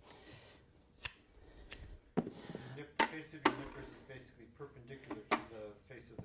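Steel hoof nippers biting through the excess hoof wall of a draft horse's hind hoof, taking short half-width bites, each cut a sharp snap. There are about five snaps, spaced irregularly.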